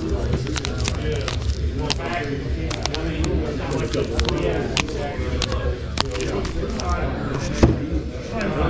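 Indistinct voices of people talking in a hall, with frequent sharp clicks of hard plastic graded-card slabs knocking together as a stack is flipped through. The loudest click comes near the end.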